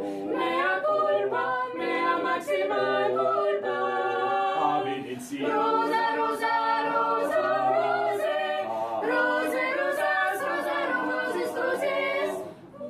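Small mixed-voice choir singing a cappella in several parts, holding sustained chords, with brief breaks between phrases about five seconds in and again near nine seconds.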